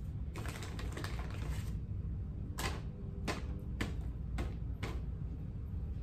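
Wrapped chocolates being handled and dropped into small gift boxes: a crinkling burst of wrapper and paper noise, then five sharp clicks about half a second apart as pieces go in one by one, over a steady low room hum.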